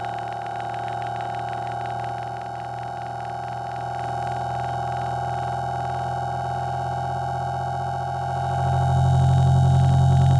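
Low-frequency test tone played on a Motorola phone: a steady low hum with many higher overtones, getting louder about eight and a half seconds in.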